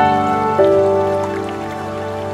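Slow, soft ambient piano music: a chord struck at the start and more notes about half a second in, each ringing out and fading. Under it runs a faint, steady rush of falling water from a waterfall.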